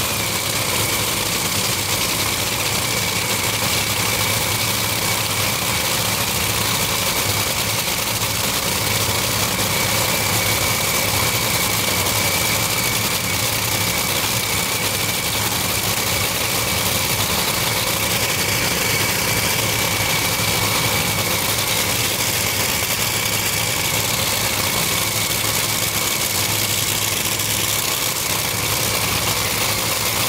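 Top Fuel dragsters' supercharged nitromethane V8 engines idling at the start line: a loud, steady, unchanging engine sound with a steady high tone over it.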